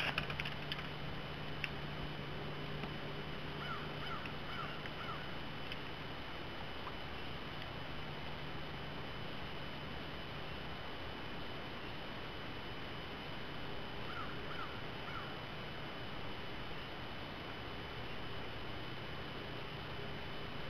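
Steady outdoor background hiss with a faint low hum that fades about six seconds in and comes back near the end. A bird calls twice, each time a quick run of three or four short notes: once about four seconds in and once about fourteen seconds in.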